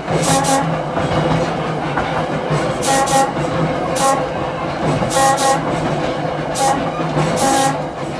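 Trolley car's air whistle sounding a series of about six toots, some short and some held about half a second, over the steady running and rail noise of the 1926 Brill interurban car.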